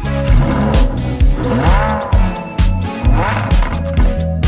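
Background music with a steady beat. Over it, twice, a car engine revs up and falls back, about a second and a half apart.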